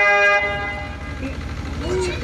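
Harmonium holding a sustained reed chord that fades out about a second in.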